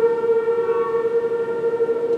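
A school concert band's woodwinds holding one long sustained note at a steady pitch, a single tone that stays level throughout.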